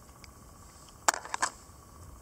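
Handling noise: a quick cluster of four or five small, sharp clicks about a second in, as small items from a survival kit tin are picked up and handled, over a low steady background hiss.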